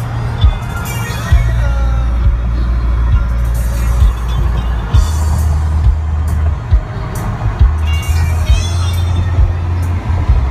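Music with a deep bass line that steps between notes, and a singing voice.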